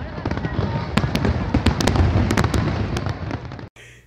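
Fireworks going off: a continuous low rumble of bursts dotted with many sharp crackles and cracks, cutting off suddenly shortly before the end.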